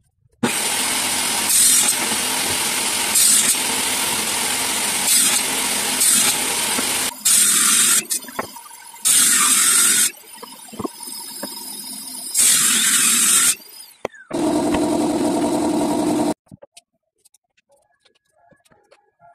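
Table saw, a circular saw blade set under a plywood table top, running and cutting PET-G-faced board panels, getting louder and higher-pitched for a second or so each time the blade bites into a panel, several times over. The saw sound stops about two seconds before the end.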